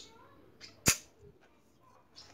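A single short, sharp click about a second in, with a few faint handling noises around it.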